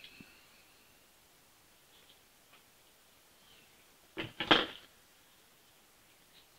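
Quiet handling of a clump of craft fur as fingers pull out the underfur. There are faint ticks, then a short, louder scuffing burst of two or three strokes a little past four seconds in.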